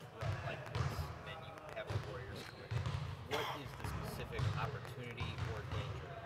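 Basketballs bouncing on a gym court in the background, uneven low thuds about once or twice a second, under a faint voice.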